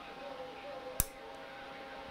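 A single sharp click about a second in, over faint steady electronic tones and room noise.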